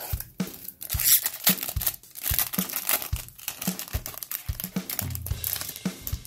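Foil wrapper of a hockey card pack being torn open and crinkled by hand, in loud crackly bursts, over background music with a steady drum beat.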